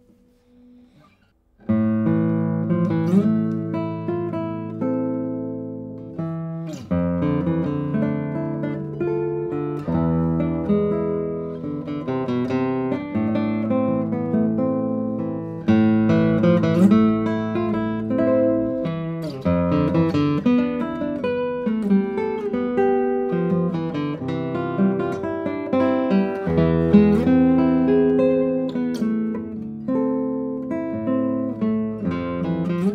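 A Daniele Marrabello 2023 No. 165 classical guitar, with a spruce top and Indian rosewood back and sides, played fingerstyle. It plays a slow passage of melody over bass notes, and each note rings on with long sustain. The playing starts about two seconds in, after a brief quiet.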